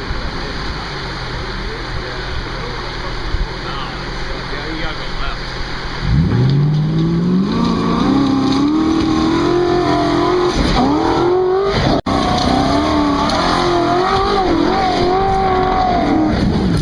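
An off-road SUV's four-cylinder engine idles, then about six seconds in it revs up under load as the truck climbs over creek-bed rocks. Its pitch rises and holds high, dips briefly and climbs again. The sound cuts out for an instant about twelve seconds in.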